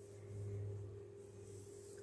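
Quiet room tone with a steady low hum, and faint handling noise as fingers work chunky yarn, a little louder in the first second.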